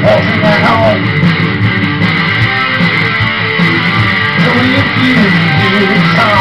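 Loud live guitar strumming in an instrumental stretch of a rock song, with a few short wordless vocal sounds.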